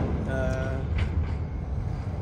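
Wind buffeting the microphone, a heavy ragged low rumble, over outdoor street noise. A short steady pitched tone sounds about half a second in, and a single click comes about a second in.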